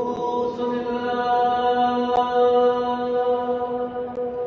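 A group of people singing together in a stone church, holding one long steady note that rings in the hall's echo.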